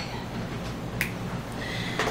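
A single sharp finger snap about a second in, over a steady low room hum. It comes from the audience, snapping being the usual way listeners show approval of a line at a poetry slam.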